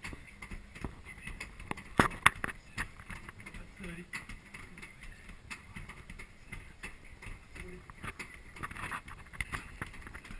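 Fists striking a hanging heavy punching bag again and again: a run of dull thuds, the loudest two about two seconds in.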